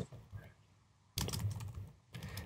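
Computer keyboard typing: a short, quick run of keystrokes in the second half, quiet beside the talk around it.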